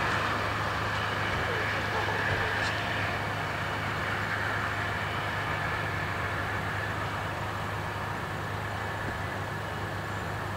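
A passenger train pulling away: a steady rumble and rail noise from its coaches, slowly fading as the train recedes.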